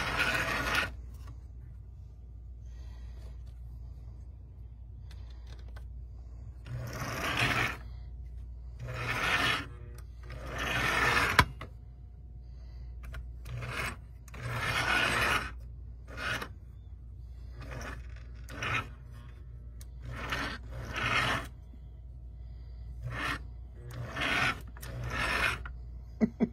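Vintage O-scale Mi-Loco K5 steam locomotive's open-frame electric motor and gears whirring and grinding in about a dozen short spurts of a second or so, each swelling and then cutting off, over a steady low hum. The old barn-find motor runs despite its rust and dust.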